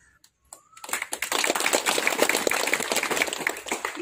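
A small crowd applauding. The clapping starts about a second in and lasts about three seconds.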